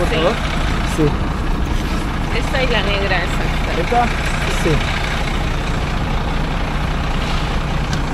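Coach bus engine idling close by: a steady low rumble.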